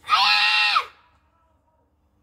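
A girl's kiai during the karate kata Enpi: one loud shout of under a second, held on one pitch and dropping off at the end.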